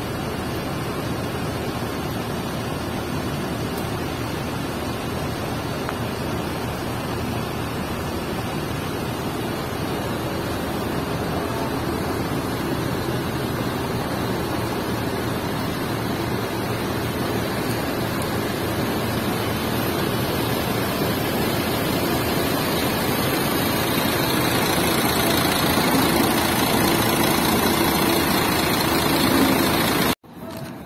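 Diesel engine of a double-decker coach running as the coach manoeuvres slowly close by, growing gradually louder, with a steady engine hum clearer near the end.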